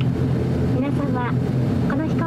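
ATR42-600 turboprop engine and propeller running at low power on the ground, a steady low hum heard from inside the cabin.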